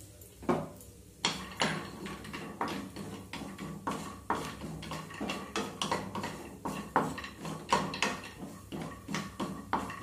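Wooden spatula stirring almonds and cashews roasting in a little ghee in a non-stick kadhai: repeated light knocks and scrapes against the pan, a few a second, starting about a second in.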